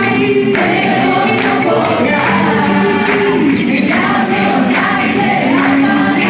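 Live worship music: a group of voices singing a Spanish praise song together with a church band, over a steady beat of about two strokes a second.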